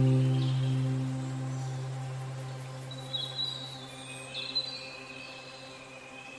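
Calm ambient music: a deep sustained note slowly fading away, with bird chirps over it from about three seconds in.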